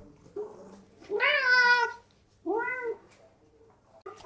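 Domestic cat meowing twice: a longer, loud meow about a second in, then a shorter one, begging for food at the table.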